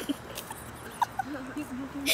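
A child's voice making a soft wordless sound: a few short high squeaks about a second in, then a low wavering hum in the second half.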